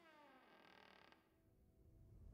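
Near silence: a faint sound dies away in the first second, then nothing.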